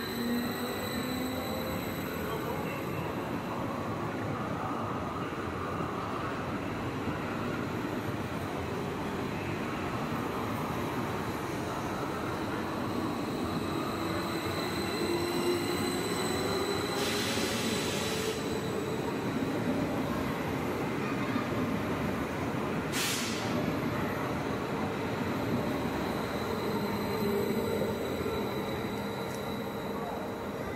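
Stadler FLIRT electric multiple unit pulling out and passing close by, its traction motors whining higher and higher as it gathers speed over the rails. Two short hisses cut in past the middle.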